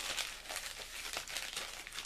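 Mail packaging rustling and crinkling as it is handled: a continuous run of small crackles.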